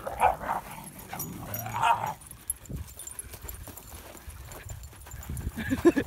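Dogs at play barking and yipping in short bursts: once right at the start and again about two seconds in.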